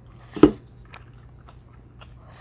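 Children eating spaghetti, with faint chewing. About half a second in comes one sharp click or knock, the loudest sound, followed by a few faint ticks.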